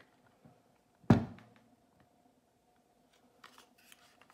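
A single heavy thunk about a second in: the cast-iron Grundfos circulator pump body is set down on a wooden tabletop. A few faint clicks of handled parts follow near the end.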